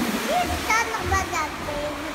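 A young child's high-pitched voice, several short utterances in quick succession, over a steady hiss of pool water.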